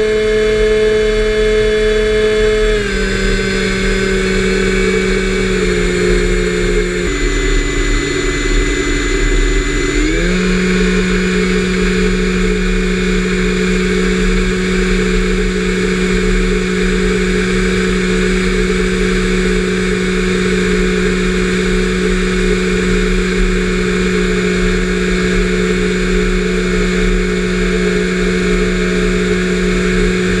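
Electric motor and propeller of a Mini Talon RC plane in flight, a steady whine. Its pitch steps down a few times in the first ten seconds, jumps back up about ten seconds in, then holds steady as the throttle is moved.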